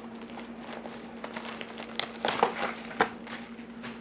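Plastic packaging of a trading-card mega box crinkling as it is handled and opened, with irregular crackles and clicks, a few sharper ones in the second half.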